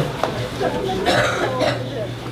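Indistinct voices with a cough about a second in.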